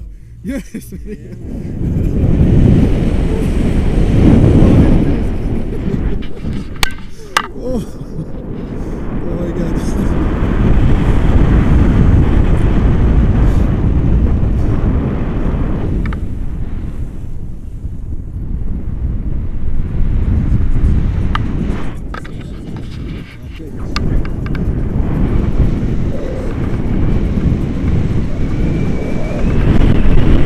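Wind buffeting the microphone of a camera on a paraglider in flight, a low rushing noise that rises and falls in strength, with a few sharp clicks about seven seconds in.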